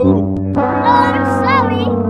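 Comic brass sound effect: a long, low, trombone-like note that sags slightly in pitch and wavers, the held last note of a sad-trombone 'wah-wah' that marks a mishap.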